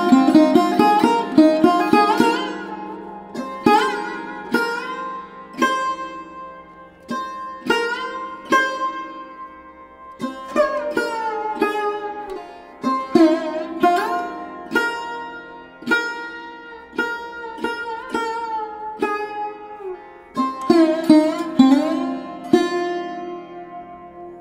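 Background music: a plucked string instrument playing a slow solo line over a steady drone, its notes struck one by one and several sliding in pitch.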